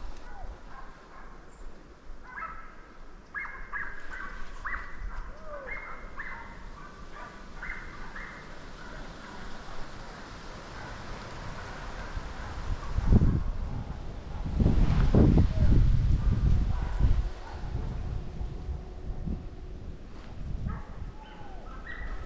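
Hunting dogs baying in the distance, a run of short repeated barks in the first several seconds. Around the middle come bursts of loud low rumbling noise on the microphone, the loudest sound here.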